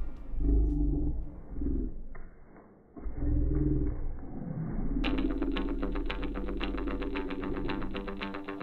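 Two dogs growling at each other in rough play, in several short bouts and then a longer one. About five seconds in, music with a quick steady beat comes in over the growling.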